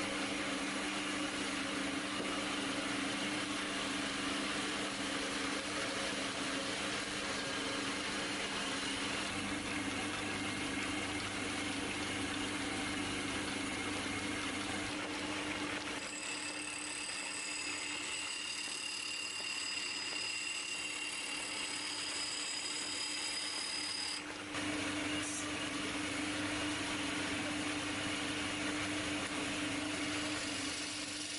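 Electric motor of a belt-driven wood lathe running with a steady hum. From about halfway until a little past two-thirds through, the hum drops back and a thin high whine takes over, then the steady hum returns.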